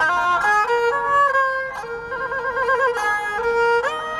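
Erhu, the Chinese two-stringed bowed fiddle, played solo: a single melody of held notes with vibrato and slides between them, with a quick upward slide near the end.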